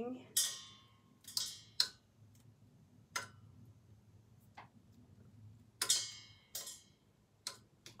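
A series of about eight light knocks and clinks, spaced irregularly, several of them with a short metallic ring: small things being handled against stainless steel.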